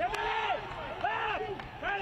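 Voices shouting on a soccer pitch: two drawn-out shouted calls, the second about a second after the first, over open-air stadium ambience.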